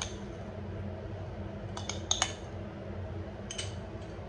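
A metal spoon clinking lightly against a bowl a handful of times as curd is spooned over the chaat, with a cluster of clinks about two seconds in. A steady low hum runs underneath.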